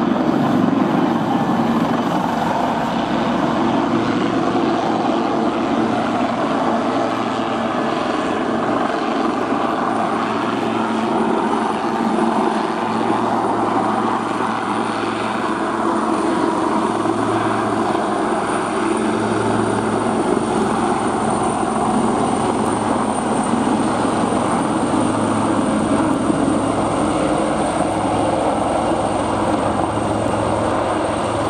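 Two Westland Wildcat helicopters, each driven by twin T800 turboshaft engines, flying in close formation. Their rotors and engines make a steady, loud noise, and a thin high whine becomes clear after about ten seconds.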